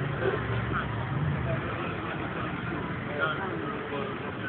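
A brief spoken word and a laugh over background noise, with a steady low hum that fades out about a second and a half in.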